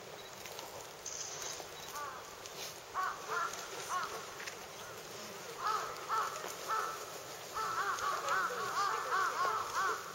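Crows cawing: a few scattered calls at first, then a fast, steady run of caws in the last few seconds.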